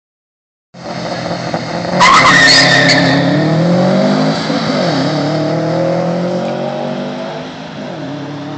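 Two Subaru cars, a WRX and an STI, launching hard: tyres squeal briefly about two seconds in, then the turbocharged flat-four engines rev up, with a gear change about halfway through, fading as the cars pull away.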